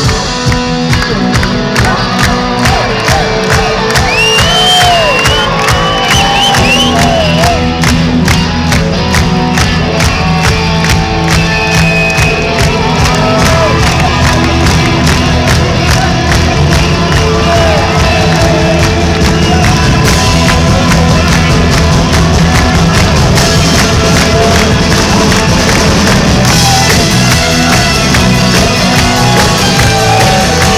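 Live rock band playing an instrumental passage, loud and continuous, with electric guitars over a steady drum-kit beat and a lead line of sliding, bent notes. Crowd noise and some cheering from the audience sound beneath the music.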